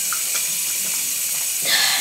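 Bathroom tap running steadily into the sink, a continuous even hiss of water.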